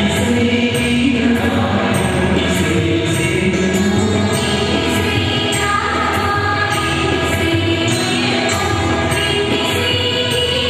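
A group of voices singing a hymn together over a steady beat, with a sharp, bright percussion stroke about twice a second.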